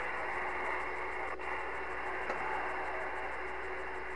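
Galaxy CB radio's speaker hissing with steady open-channel static while no reply comes through, with a faint steady tone beneath it.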